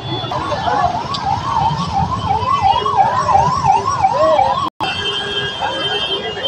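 Electronic siren in a fast yelp, its pitch rising and falling about two and a half times a second over crowd and street noise. It stops near the end, cut by a brief gap in the sound.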